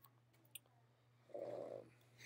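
Near-silent room with a faint click about half a second in, then a short muffled rush of noise near the end.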